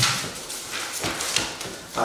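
Sheets of printed paper rustling and shuffling as they are handled, in several short irregular bursts.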